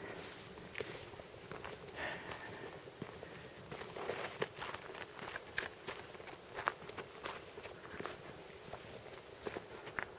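Footsteps on a dry, stony gravel path: irregular short crunching steps as a walker moves along.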